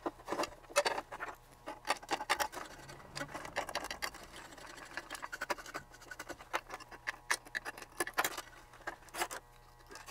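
Irregular clicks, taps and light scrapes of a small metal hand tool and parts against an aluminium instrument chassis, as the front-panel terminal hardware is worked loose or fitted. A faint steady hum sits underneath.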